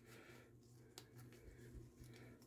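Near silence, with a faint click about a second in and a few fainter ticks after it: nylon webbing being handled and fed through a plastic sling triglide.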